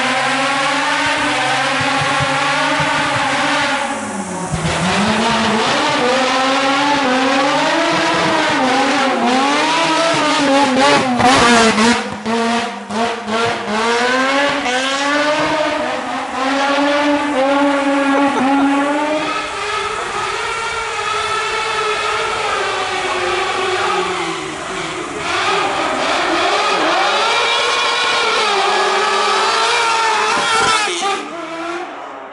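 Race car engine driven hard up a hillclimb course, its revs climbing and dropping again and again through gear changes and corners. A few sharp cracks come about eleven to twelve seconds in.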